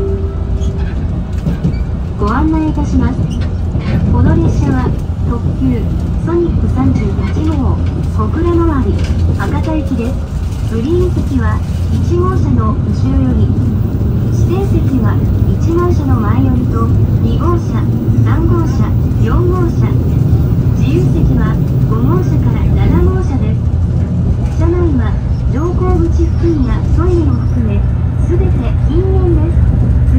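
Steady low running rumble inside a moving limited express train, with indistinct voices talking throughout. The on-board announcement for the next stop starts at the very end.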